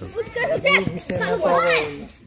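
Voices talking over one another, one of them high like a child's.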